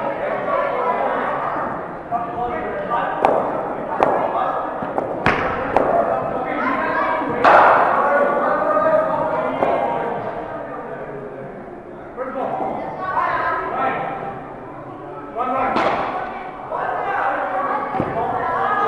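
Voices of children and spectators chattering, echoing in a large indoor hall, with about five sharp knocks of a cricket ball against bat and floor, the loudest about seven seconds in.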